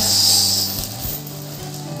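Clear plastic bag crinkling and rustling as the bagged cast net is lifted, loudest in the first half second, followed by a few light clicks.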